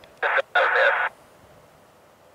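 Air-traffic radio heard over a scanner: two short bursts of tinny, narrow-band voice transmission that cut off about a second in, followed by faint hiss.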